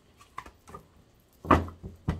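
Tarot cards being handled on a table: a few light clicks and taps, then a dull thump about one and a half seconds in, followed by a smaller knock, as the deck is set down and squared.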